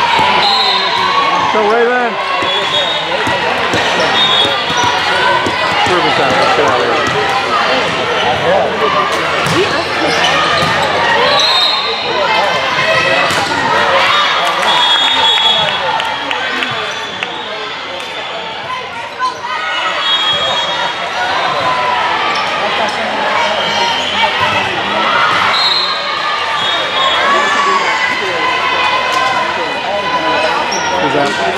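Gymnasium sounds of a volleyball match: many voices of players and spectators chattering and calling out, sneakers squeaking on the court, and the thuds of a volleyball being hit and bounced.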